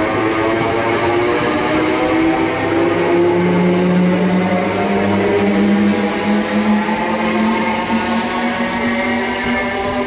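Electric multiple unit pulling out along the platform. Its traction motors give a whine in several tones that rise steadily in pitch as it gathers speed, over the rumble of wheels on rail.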